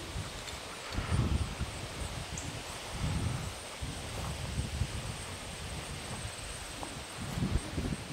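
Outdoor background noise in a grass field: a steady faint hiss with a few low rumbles, about a second in, around three seconds, and again near the end.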